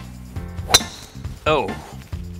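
A golf driver striking a ball off the tee: one sharp metallic crack about three quarters of a second in, with a brief ringing after it.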